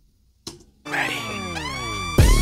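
A break in a K-pop song: near silence, then about a second in a synth sweep swells up, its many tones sliding in pitch, some falling and some rising.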